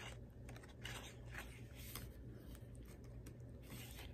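Faint rustles and soft taps of paper journaling note cards being handled and flipped through, a few short strokes spread across the time, over a low steady hum.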